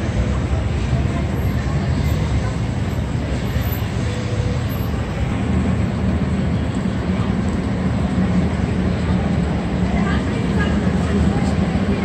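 Steady rumble of city street traffic, growing heavier about halfway through.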